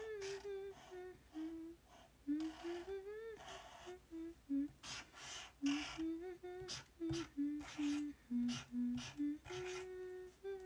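A young woman humming a wordless tune to herself. The pitch steps from note to note in short held tones, with a few short hissy noises between phrases.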